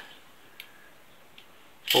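Shepherd's-hook metal tent pegs clinking faintly as a handful of them is sorted and counted, with two soft clicks a little under a second apart.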